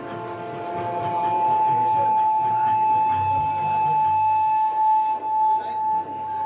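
Electric guitar tone held through the amplifier, a single steady pitch with overtones that rings on for about six seconds, with low bass rumble in the middle of it.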